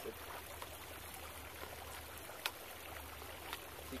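Steady, faint outdoor background hiss with a low hum, and one sharp click about two and a half seconds in as a kayak paddle's shaft sections are pulled apart.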